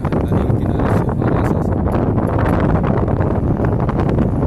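Wind blowing across the microphone: a loud, steady low rumble with frequent crackles.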